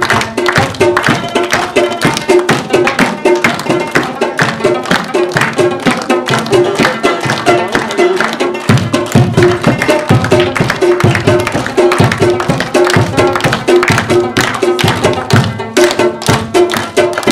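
A folk tune played live on a rubab, its plucked melody repeating over a fast, steady beat drummed by hand on an upturned plastic bucket, with hand clapping. The drumming gets heavier in the low end about halfway through.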